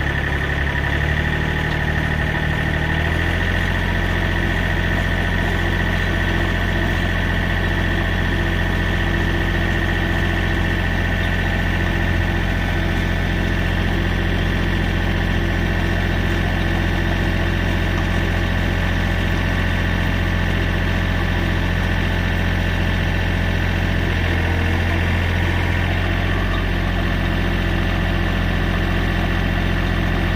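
John Deere 3025E compact tractor's three-cylinder diesel engine running steadily under load as it drives a PTO post hole digger auger boring into sandy soil. The engine note shifts about three seconds in.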